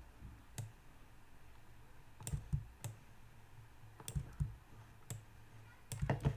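About eight separate clicks of a computer mouse and keyboard at irregular spacing, as facets of a 3D model are paint-selected with shift and left click.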